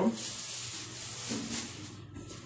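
Soft steady hiss from a large aluminium pan of rolled oats toasting over a lit gas burner.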